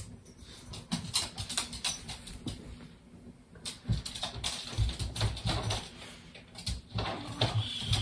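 Rustling and soft irregular bumps of a knit blanket being spread and tucked into a bassinet by hand, close to the microphone.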